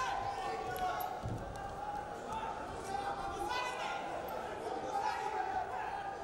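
Indistinct voices calling out, echoing in a large sports hall, with a dull thump about a second in.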